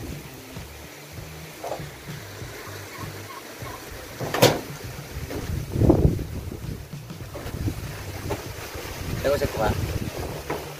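Wind noise rumbling on the microphone, with a sharp click about four and a half seconds in and a thump about a second and a half later.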